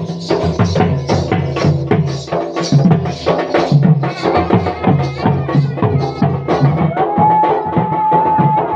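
Odia danda nacha folk music led by a barrel drum (dhol) beaten in a quick, steady rhythm. A held high note joins near the end.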